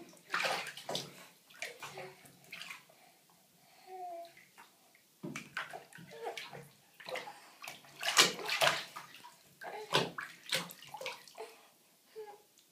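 Shallow bathwater splashing and sloshing in a tub as a baby paddles and slaps the surface with its hands; the splashes come irregularly, the loudest about eight seconds in.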